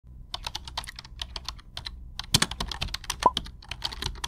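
Computer keyboard typing: rapid, irregular key clicks, a few louder clacks about two and a half seconds in, over a low steady hum.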